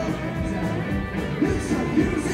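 A rock band playing live, with electric guitars and a drum kit, loud and steady, with a couple of sharper accents near the end.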